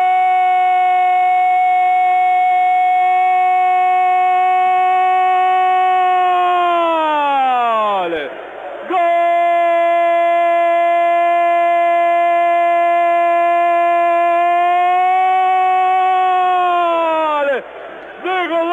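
A male radio commentator's long, drawn-out goal cry ('¡Gooool!'), held on one steady pitch in two long breaths of about eight seconds each. Each breath slides down in pitch at its end, with a short gap for breath a little past the middle. The sound is narrow and band-limited, as in a radio broadcast.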